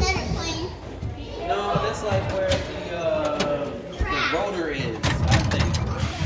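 Children's voices and chatter, with a few light knocks about five seconds in.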